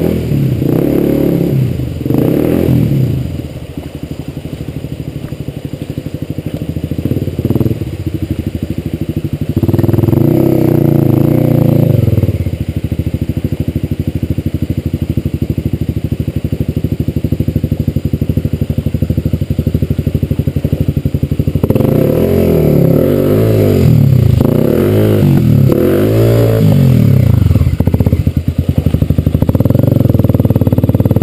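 Dirt bike engine running throughout, revved hard about ten seconds in and then again and again from about two-thirds of the way through, the revs rising and falling each time, as the bike sits stuck in a river crossing.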